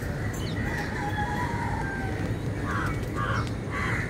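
A crow calling: a long drawn-out call over the first two seconds, then three short caws about half a second apart near the end, over a steady low background rumble.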